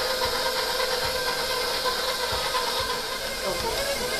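Electric 6-quart bowl-lift stand mixer running steadily, a motor hum and whine as its dough hook works flour into a stiff butter and cream-cheese dough in the steel bowl.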